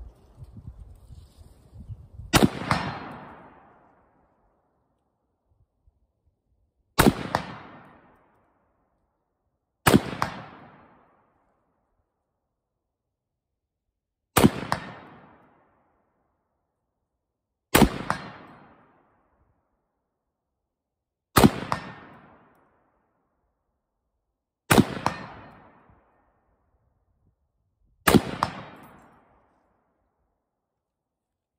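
Eight rifle shots from a Harrington & Richardson M1 Garand firing .30-06 Greek HXP surplus ammunition: a full eight-round clip fired one aimed shot at a time, about three to four and a half seconds apart. Each is a sharp crack with a short echo that dies away within about a second.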